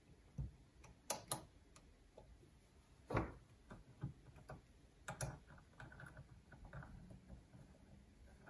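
Light metallic clicks and ticks of an Allen key working screws loose in the steel plate of a small rotary table, sparse and irregular, with a few sharper clicks about a second in, around three seconds and around five seconds.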